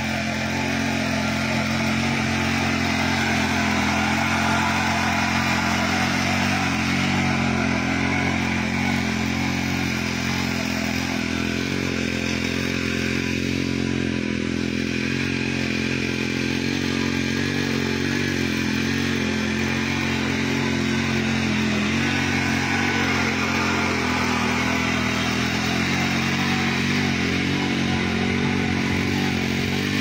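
Mini power tiller's 63 cc four-stroke, air-cooled petrol engine running steadily under load as the tiller is pushed through grassy soil.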